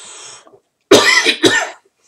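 A man coughs twice in quick succession about a second in, after a sharp breath in.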